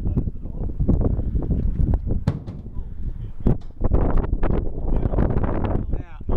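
Wind buffeting the camera microphone: an uneven low rumble that rises and falls in gusts.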